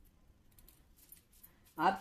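A few faint, brief rustles from hands rubbing carom seeds between the palms over a steel bowl of flour. A woman's voice starts near the end.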